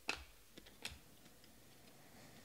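Glossy Panini Select football cards being flipped through by hand, the cards clicking as they are slid off the front of the stack. There are a few sharp clicks, the loudest right at the start and two more within the first second.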